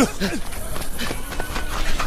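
Fight-scene soundtrack: a man's shouted "no" at the start and a short cry, then scuffling with a quick run of thuds and knocks from blows and footfalls over a rough noisy bed.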